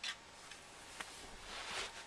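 Faint handling of a plastic action figure: a light click at the start, another sharp click about a second in, and a brief rubbing scrape near the end.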